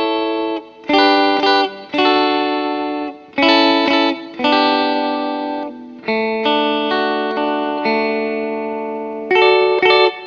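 Relish Mary One aluminum-framed semi-hollow electric guitar with Seymour Duncan Alnico II humbuckers, on the middle pickup setting, playing a clean chord progression. Each chord is struck and left to ring out, with short breaks between them, and a fresh chord begins near the end.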